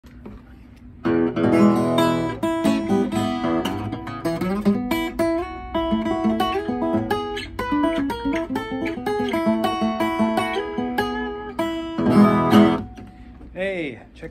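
A 1960s Harmony all-mahogany acoustic guitar being played: a strummed chord about a second in, then a run of picked notes and chords, and another strum near the end.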